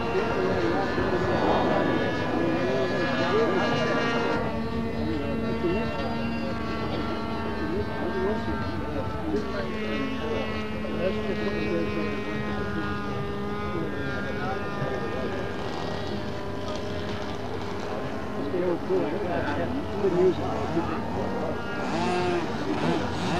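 Powered parachute's propeller engine droning steadily in flight, its pitch holding nearly constant, with people talking in the background.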